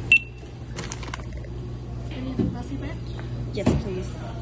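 Checkout barcode scanner giving one short high beep, followed about a second later by a brief clatter of items on the steel checkout counter, over a steady store hum and voices.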